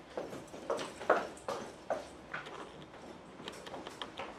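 Footsteps of boots on a hard floor, a quick even walk of about two steps a second that grows fainter after the first couple of seconds.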